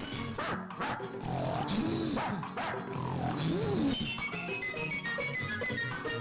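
Background music from a film score, with several drawn-out cries that rise and fall in pitch and a few sharp hits over it during a comic scuffle.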